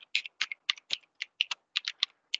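Computer keyboard keys clicking in a quick, uneven run of keystrokes as text is typed, about six or seven a second.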